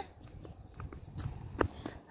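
Footsteps on a concrete sidewalk: a few faint taps, one sharper one near the end.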